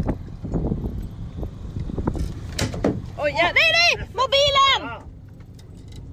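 A person screaming twice, high-pitched, each cry rising and falling in pitch, over a low steady rumble; a few sharp knocks come just before the screams.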